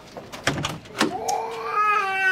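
A baby crying: a drawn-out, rising wail starting about a second in, after a few sharp knocks and clicks.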